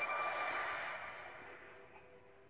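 Music from a television documentary's soundtrack: held tones over a hiss, fading away steadily.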